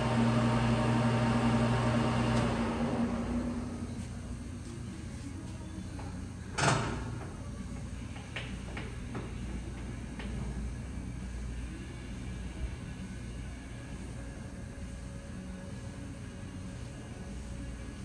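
Clausing Metosa C1340S gap-bed lathe running at 175 rpm, then switched off about two seconds in and coasting to a stop. About seven seconds in a sharp clunk and then a few lighter clicks come from the headstock speed-change levers being shifted.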